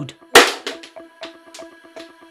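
A small aluminium electrolytic capacitor, connected with the wrong polarity, bursts with a single sharp bang about a third of a second in, followed by a short fading tail.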